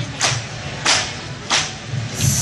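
A group of dancers clapping hands in unison to the beat of an Onamkali dance: three sharp claps about two-thirds of a second apart, over a low steady hum.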